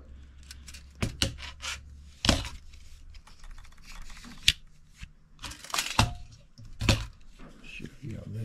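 Irregular clicks and knocks from a folding pocket knife and a tape measure being handled on a cutting mat. Several sharper clicks stand out near the middle and toward the end.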